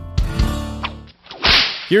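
The tail of a guitar music bed dying away, then a short swish sound effect, a transition between segments, that starts about a second and a half in and cuts off sharply.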